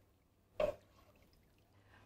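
Mostly near silence, broken a little over half a second in by one short slosh of broth as a ladle stirs it in a saucepan.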